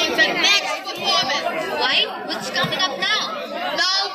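Crowd chatter: many people talking at once, their voices overlapping.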